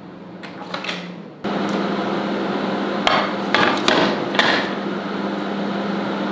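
A convection microwave oven humming steadily, the hum cutting in suddenly about a second and a half in, with several sharp knocks and clicks between three and four and a half seconds in as its door is opened and the metal cake tin inside is handled.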